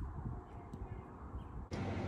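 Wind buffeting the phone's microphone outdoors: an uneven low rumble in gusts, with an abrupt change in the background near the end.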